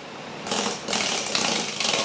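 Electric fan with coarse sandpaper taped to its blades, grinding against bare skin in a loud, rapid rattle that starts about half a second in. The contact drags the motor down, so it needs time to speed back up.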